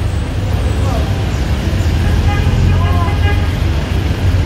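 Street traffic: a steady low rumble of car and van engines, swelling a little around the middle, with faint voices of people nearby.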